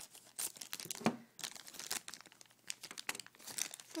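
Crinkly blind-package wrapping being handled, with irregular crackles and rustles, the sharpest about a second in.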